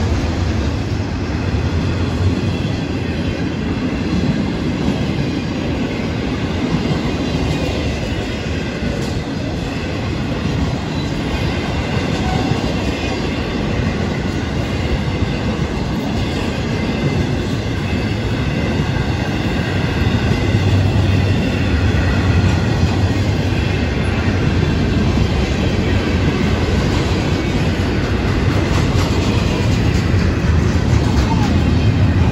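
Florida East Coast Railway intermodal freight train's double-stack container well cars rolling past on the rails: a loud, steady rumble of steel wheels on rail, with faint high-pitched ringing tones above it.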